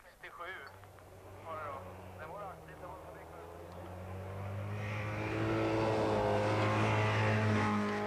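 A rally car's engine approaching at steady high revs, growing louder over several seconds until it is close and loud near the end.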